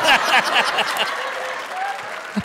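Studio audience applauding and laughing after a punchline. The applause slowly dies down toward the end.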